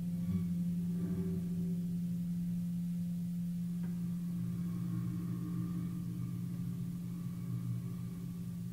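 Solo piano: a low bass note or chord rings on under the sustain pedal and slowly fades. A soft higher note enters about four seconds in and rings on with it.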